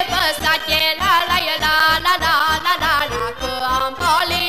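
Romanian folk song with band accompaniment. A steady bass beat of about three pulses a second runs under a wavering, ornamented melody, and a young woman's singing voice is heard.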